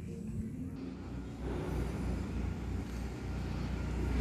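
Outdoor background noise: a steady low rumble with a faint hiss over it, growing a little louder about a second and a half in.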